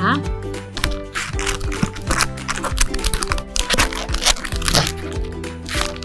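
A plastic stand-up food pouch crinkling and crackling as it is handled and opened, with a dense run of sharp crackles from about a second in until near the end. Background music with sustained tones plays underneath.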